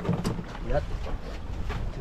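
Wind and sea noise around a small open fishing boat, with a few short scraps of voices and a couple of light knocks.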